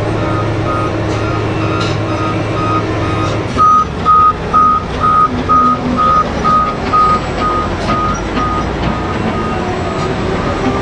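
Reversing alarm of a BelAZ 75710 mining haul truck beeping about three times a second as it backs into loading position, loudest from about three and a half seconds in. Under it runs a steady low machinery drone.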